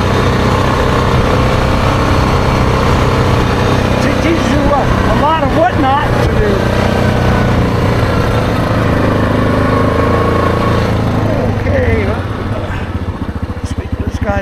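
ATV engine running steadily under way on a gravel trail, with wind noise over it. About twelve seconds in it drops to a quieter, evenly pulsing idle as the quad slows and stops.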